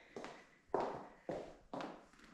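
Footsteps on a hardwood floor: four steps, about two a second.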